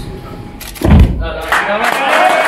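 A single heavy wooden thud about a second in, as a hexagonal wooden block is knocked into a wooden honeycomb wall board, then men's voices break into shouting.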